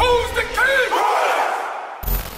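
A crowd of men shouting together, with one voice calling out over them, the shout dying away toward the end.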